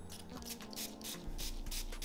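Hairbrush bristles scratching through a section of natural hair in quick repeated strokes, several a second.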